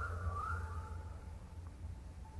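A quiet pause with a steady low hum and a faint wavering whistle-like tone that fades out in the first second.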